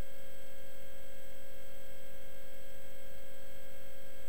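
A steady electronic tone held at one mid pitch, with fainter higher overtones, unchanging in level.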